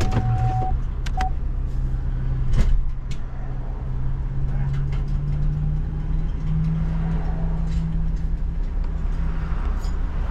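Pickup truck engine idling, heard from inside the cab as a steady low drone that rises slightly in pitch over several seconds. A steady electronic warning tone cuts off about half a second in and is followed by one short beep. A single knock, the loudest sound, comes about two and a half seconds in.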